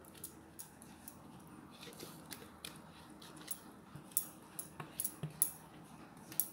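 Faint, scattered clicks and scrapes of a utensil working thick green chutney out of a mixer-grinder jar into a glass bowl, the clicks coming more often in the second half.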